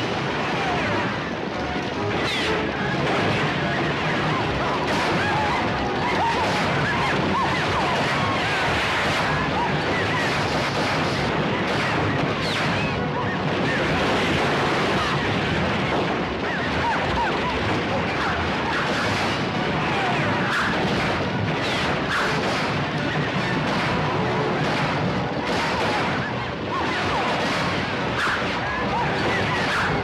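A dense, continuous film battle mix: gunshots, galloping horses and yelling riders.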